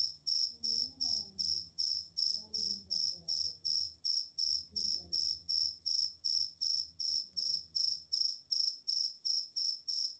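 A cricket chirping loudly and steadily, a high-pitched chirp repeated about three to four times a second, with a faint voice murmuring underneath.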